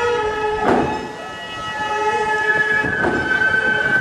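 Gagaku court music accompanying bugaku dance: held chords of wind instruments, typical of the shō mouth organ with the hichiriki reed pipe, sounding long steady notes, with a percussion stroke about a second in and another near three seconds.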